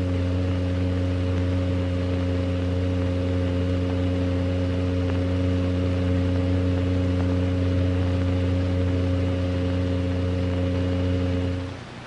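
A steady low hum made of several fixed tones, with a faint high whine above it, that fades out just before the end.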